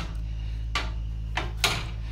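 Hinged glass cover of an RV's three-burner gas cooktop being lowered shut: a few light knocks, the sharpest near the end. A steady low hum runs underneath.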